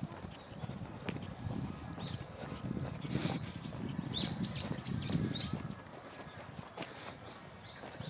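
Footsteps walking down stone steps, a run of uneven knocks and scuffs, with high bird chirps over them a few seconds in.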